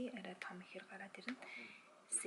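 A woman speaking quietly.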